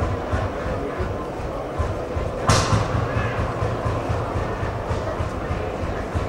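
Old tractor engine idling with a steady, even low chugging. A single sharp crack cuts through it about two and a half seconds in.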